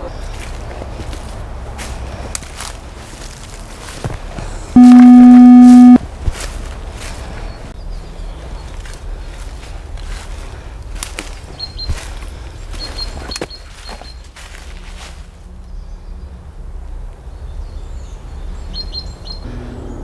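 Footsteps crunching over dry ground and leaf litter while walking, over a steady low rumble of distant road traffic, with a few faint bird chirps later on. About five seconds in, a loud steady buzzing tone sounds for about a second and is the loudest thing heard.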